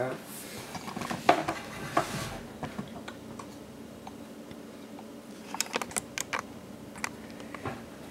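Light clicks and knocks from a glass mason jar being handled and moved on an electric stovetop. There are a few scattered taps early on and a quick cluster of clicks about six seconds in.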